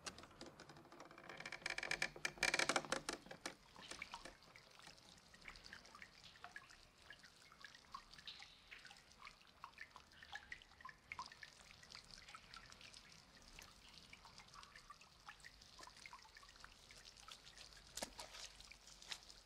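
A wooden door creaks open in a long, ratcheting creak from about one second in to about three and a half seconds in, the loudest sound here. After it comes faint, scattered dripping and trickling of water that goes on to the end.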